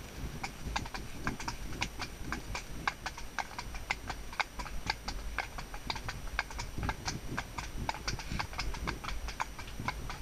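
A pony's hooves clip-clopping on a wet tarmac lane: a quick, uneven run of sharp clicks.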